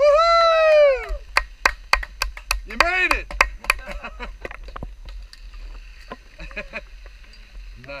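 A person's long whooping cheer that rises then falls in pitch, followed by a string of sharp knocks over the next few seconds with another short shout among them.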